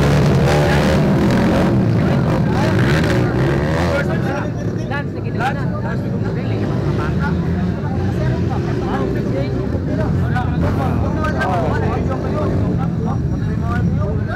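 Motocross dirt bikes revving hard as they pass close by, their engines fading off after about four seconds into a lower, more distant drone of bikes out on the track.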